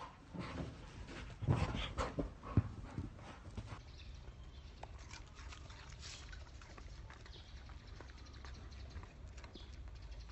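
A golden retriever's paws scrambling and thumping as it leaps about, a burst of knocks with the loudest about one and a half and two and a half seconds in, followed by fainter scattered ticks and rustles.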